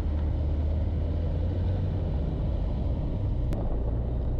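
Steady low rumble of a car driving on a rough, unpaved mountain road: engine and tyre noise with no change in pace.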